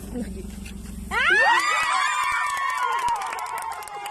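A long, high-pitched scream of surprise, starting about a second in, rising sharply, then held and slowly sinking, with other voices crying out with it. Short sharp claps join in from about two seconds on.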